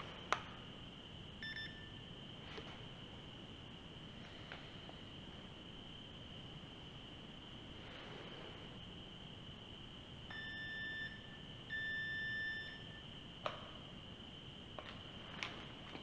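Handheld paranormal-investigation detector beeping: a short beep about a second and a half in, then two longer beeps about ten and twelve seconds in, over a steady faint high whine, with a few sharp clicks.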